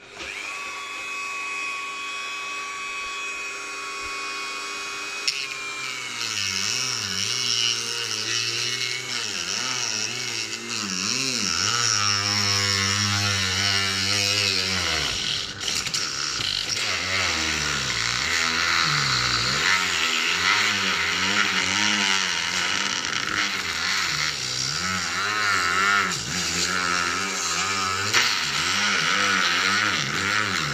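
Dremel rotary tool starting up and running with a high whine, steady for about five seconds, then wavering up and down in pitch as the bit grinds away plastic inside a microphone case.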